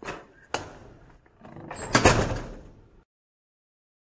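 A wooden door pushed open with a click, then swung and slammed shut, the slam the loudest sound, about two seconds in. The sound cuts off suddenly about a second later.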